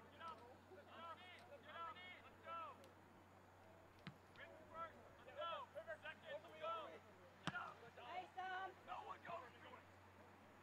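Faint shouts of soccer players calling to each other across the field, short and repeated. Two sharp knocks stand out, about four seconds and seven and a half seconds in.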